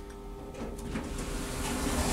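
Lift car's automatic sliding doors opening at the landing: a faint steady hum fades in the first half second, then a hiss grows steadily louder.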